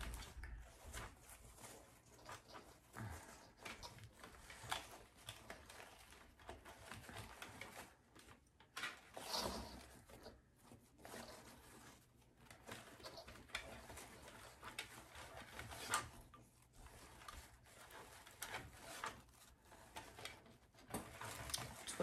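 Faint rustling and crinkling of ribbon being looped, pulled and pressed into a Bowdabra bow-making tool, with scattered small taps.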